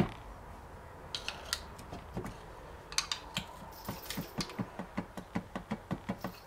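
A screwdriver working at the seam of a Peugeot BE4 gearbox casing as the two halves are pried apart: a sharp click at the start, then scattered light metallic clicks and ticks that come faster near the end.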